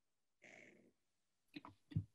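Near silence, with a faint breath about half a second in and a few soft mouth clicks near the end.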